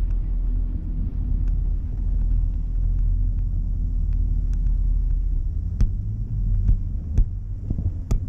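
Wind buffeting the parasail rig and its open-air camera microphone: a steady low rumble, with a few sharp clicks in the second half.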